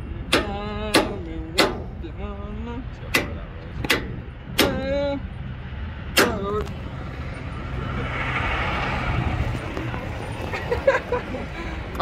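About seven sharp hammer blows on a bar held in locking pliers against a trailer hub's seized wheel bearing, spaced unevenly over the first six seconds, trying to drive the failed bearing free. A rushing noise swells and fades afterwards.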